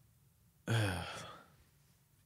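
A man's voiced 'ugh' sigh about half a second in, falling in pitch and trailing off into breath over most of a second.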